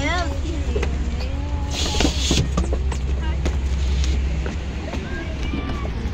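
A passenger van's engine idling with a low, steady rumble while people climb out and chat, with a short hiss about two seconds in. The rumble eases after about four and a half seconds.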